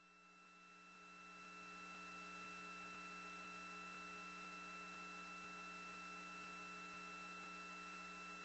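Faint, steady electrical hum and hiss of an open audio line, with several steady tones at different pitches. It fades up over the first second or so.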